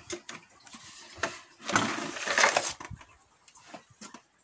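Handling noise as a hive super is lifted and set back into the hive: several light knocks and clicks, with a scraping rustle about two seconds in.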